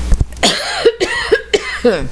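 A woman coughing, about five short coughs in a row, which she puts down to her medication.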